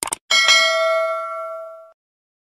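Two quick mouse-click sound effects, then a bright bell ding that rings on with several steady tones and fades, cut off just before the end. This is the notification-bell sound effect of a subscribe-button animation, marking the bell being switched on.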